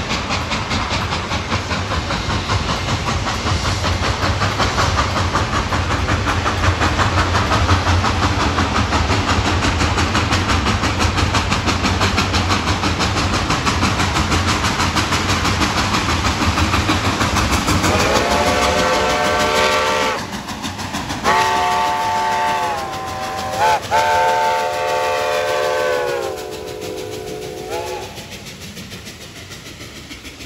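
Reading & Northern 2102, a 4-8-4 steam locomotive, working hard, with rapid exhaust chuffs and steam hiss. Then its steam whistle sounds the grade-crossing signal, two long blasts, a short one and a long one that sags in pitch as it ends. The sound fades as the train moves away.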